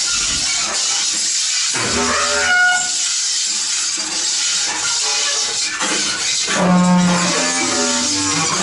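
Free-improvised music for bass clarinet, cello and two drum kits: a steady high, hissing wash of noise with scattered short pitched tones, and a held low note about three-quarters of the way through.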